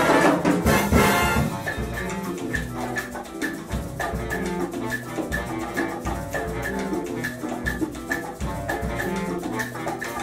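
Afro-Cuban jazz big band playing. A loud full-band brass passage lasts about a second and a half, then the horns drop back, leaving bass, percussion and a steady high tick about three times a second.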